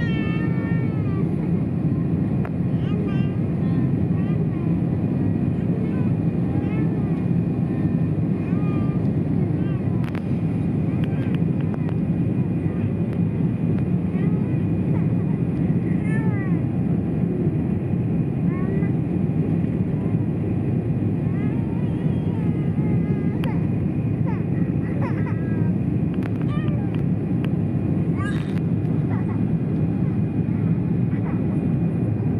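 Steady low engine and airflow noise heard inside an airliner cabin during the descent on approach, unbroken throughout. Short, high-pitched vocal sounds that come and go every second or two sit above it, typical of a young child in the cabin.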